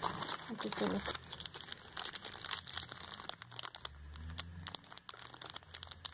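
Clear plastic packaging crinkling in the hands as wrapped lipsticks are handled: a run of small, irregular crackles.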